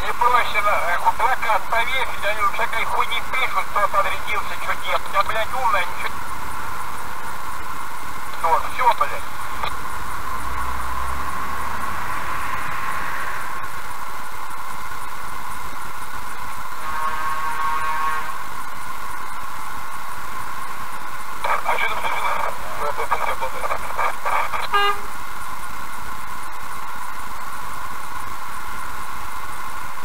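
Indistinct voices inside a car cabin, over a steady electrical hum. A vehicle horn sounds once, for about two seconds, just past the middle.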